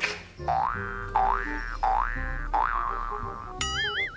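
Comic sound effect over light background music: four rising, whistle-like glides about two-thirds of a second apart, then a wobbling warble near the end.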